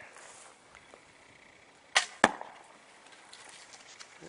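Oregon ash bow with a rawhide bowstring loosing an arrow: two sharp snaps about a quarter second apart, about two seconds in, the second the louder.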